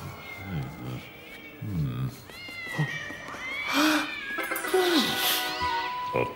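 Cartoon cats meowing and yowling: several rising-and-falling calls, the loudest in the second half, over background music.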